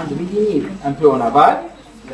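A man's voice speaking in a room, the words indistinct, pausing near the end.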